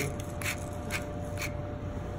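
Hand-held pepper mill grinding black pepper over the pan in several short grinds, with a faint steady hum behind.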